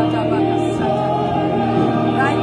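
Gospel worship music with a choir singing sustained, held notes.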